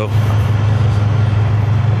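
Semi truck's diesel engine idling: a steady low hum with no change in pitch.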